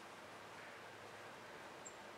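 Near silence: faint steady background hiss, with one brief, faint high chirp near the end.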